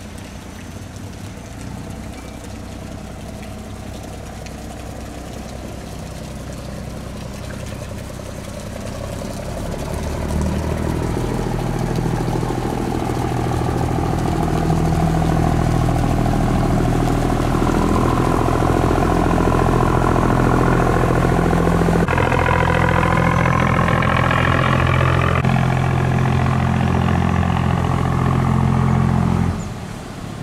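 Diesel engine of a large steel cargo barge passing close by, a steady low drone that grows louder over the first half and stays loud. The sound cuts off abruptly near the end.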